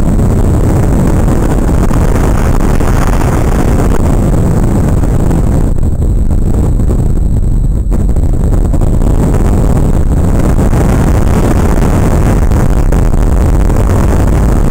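Loud, steady rumbling noise of a vehicle moving through a tunnel, heaviest in the low end, with the higher part of the noise dropping away briefly around six to eight seconds in.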